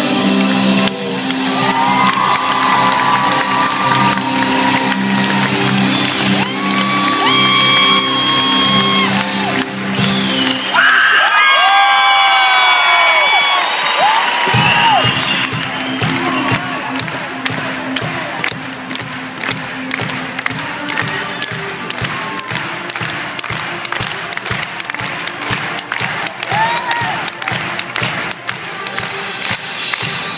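A live band playing in an arena, with the crowd cheering and whooping over it. The low end of the music drops out for a few seconds near the middle, and the crowd's whoops and whistles stand out. From about halfway, the audience claps along until the end.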